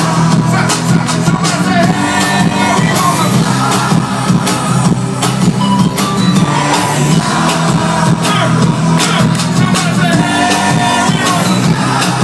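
Loud hip-hop concert music with a steady beat and heavy bass, playing over a festival PA and heard from among the crowd, with crowd noise mixed in.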